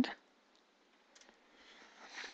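A few faint computer keyboard clicks a little over a second in, as a typed word is corrected; otherwise quiet.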